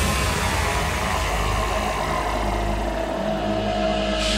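Beatless passage of the stage show played over the festival sound system: a deep steady rumble under a tone that slowly slides downward, between the beat-driven music before it and the sung section after it.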